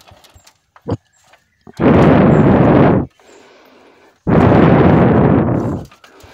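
Splendor motorcycle's single-cylinder engine firing in two loud bursts of rapid exhaust pops, each a second or so long, as the rear wheel is turned by hand in second gear to bump-start it because the kick starter has failed. There is a short click just before the first burst.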